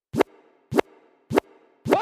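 Four short electronic 'plop' hits, evenly spaced about half a second apart, each a quick upward pitch sweep. The fourth comes at the very end and begins to trail off into falling tones.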